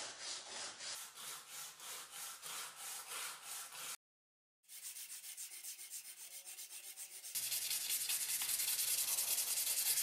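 A strip of abrasive sanding belt is pulled back and forth by hand around a knife's copper handle scales, giving even rasping strokes about two to three a second. After a short break the strokes come faster. A little past halfway they give way to a louder, denser, steady sanding rasp.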